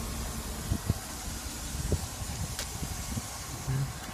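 Low, steady vehicle rumble with a faint hiss, broken by a few light knocks.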